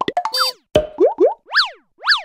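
Cartoon-style sound effects of an animated logo sting: a quick run of clicks and pops, then short rising pitch glides, then a sweep that rises and falls sharply near the end.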